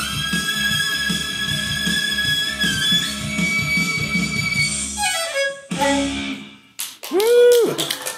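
Solo violin playing held bowed notes, closing with a descending run of notes about five seconds in. Near the end a person's loud exclamation rises and falls in pitch, and claps begin.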